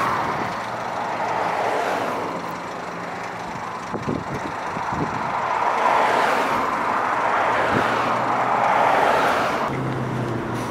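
Wind and road noise rushing in through an open car window while driving, a steady rush that swells and fades a few times as traffic goes by, with a low engine hum underneath.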